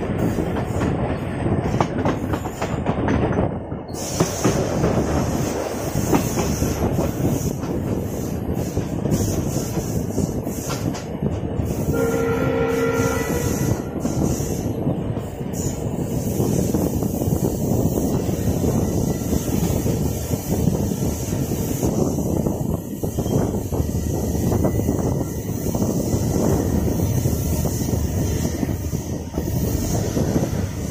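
Running noise of a passenger express train heard from an open coach doorway: a steady rumble of wheels on rail mixed with wind rush. About twelve seconds in, the locomotive's horn sounds once for about a second and a half.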